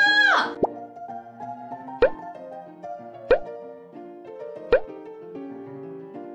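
A pop song playing from an L.O.L. Surprise Remix toy record player: a held sung note ends about half a second in, then an instrumental melody carries on with three sharp rising bloops about a second and a half apart.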